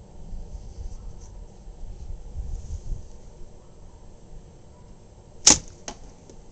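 A slingshot shot with white food-grade latex flat bands firing a 3/8-inch steel ball into a cardboard box catch: one sharp crack near the end, followed by a fainter click. The shot clocks about 163 feet per second.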